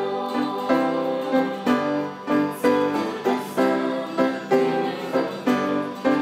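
A small choir singing a song with keyboard accompaniment, the chords struck about twice a second.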